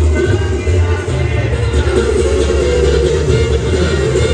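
Loud live regional Mexican band music, with a heavy low bass line under a sung vocal, heard from within the concert crowd.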